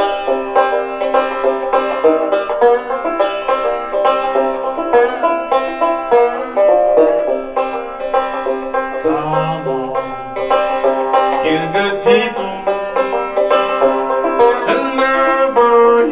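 Open-back banjo played solo, a steady, busy run of plucked notes ringing on without a break.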